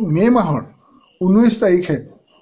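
A man speaking in Assamese in two short phrases with a pause between, over a steady high chirring of crickets in the background.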